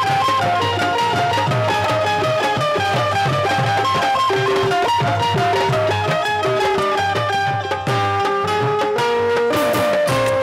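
Qawwali ensemble playing an instrumental passage: a melody of short, steady held notes over a regular hand-drum rhythm, with no singing.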